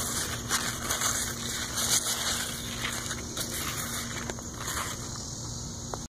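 Pumpkin leaves rustling and crackling unevenly as they are brushed and handled close to the microphone.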